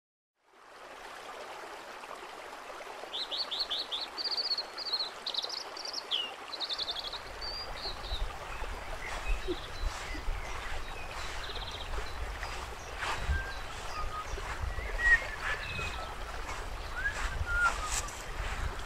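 Wild birds singing, with a run of quick trilled calls a few seconds in, then fainter scattered chirps. A low rumble joins about seven seconds in, with a few light clicks.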